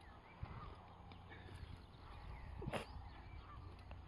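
Long-handled weed puller levering a ragwort plant, roots and soil, out of grassy turf: faint and low, with one brief louder sound about three quarters through.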